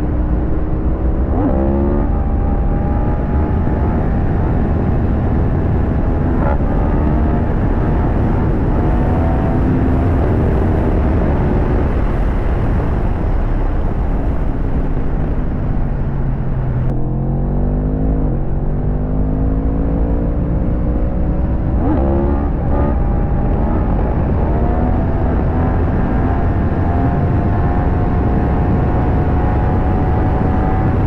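Yamaha MT-10's crossplane inline-four engine pulling hard through the gears, its pitch climbing and then dropping at each upshift, under heavy wind rush on the camera. In the middle the revs fall away as the throttle is eased, then the engine pulls up through the gears again.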